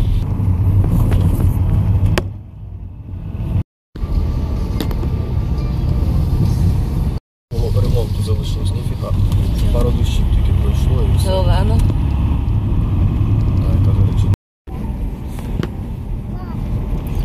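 Steady low rumble of a car's engine and tyres heard from inside the cabin while driving on a rough, potholed country road. The sound cuts out completely for an instant three times.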